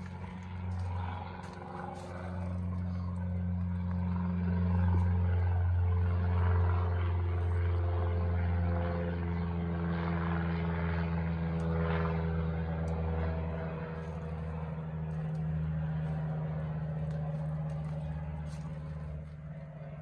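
A low, steady engine drone whose pitch shifts slowly, growing louder over the first few seconds and then easing off gradually toward the end.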